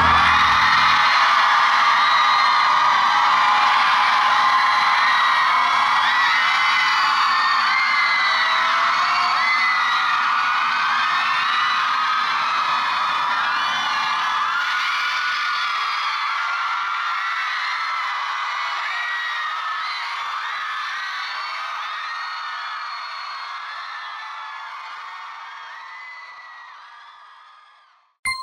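The last of the song cuts off about a second in. A large crowd of fans then screams and cheers, many high voices together, fading out gradually toward the end.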